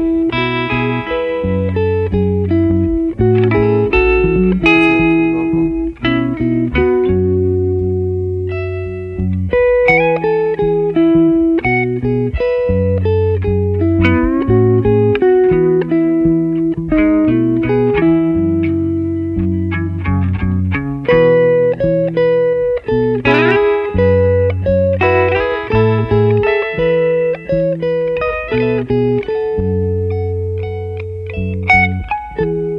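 Electric guitar solo over a bass guitar line: melodic single notes and chord stabs, with a quick slide up the neck about two-thirds of the way through.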